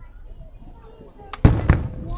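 Two loud firework bursts about a second and a half in, a quarter of a second apart, each going off suddenly and leaving a rumbling tail.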